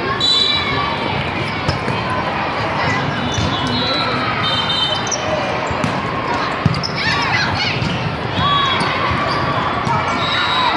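Volleyballs being served and struck in a large echoing sports hall, with sharp knocks, the loudest about two-thirds of the way through. Short sneaker squeaks on the court and steady crowd chatter run underneath.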